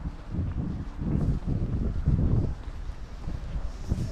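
Wind buffeting the camera's microphone: an irregular low rumble that swells and dips in gusts.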